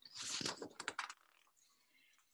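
A faint quick run of clicks and rustling, like hands handling something at a desk, lasting about a second before the sound cuts out.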